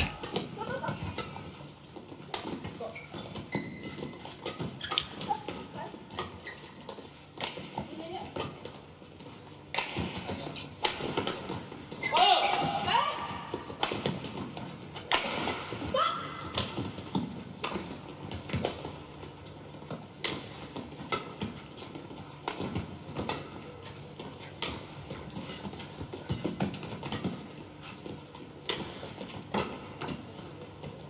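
Badminton rally: a string of sharp racket hits on the shuttlecock, with short squeaks of shoes on the court mat, busiest and loudest about halfway through.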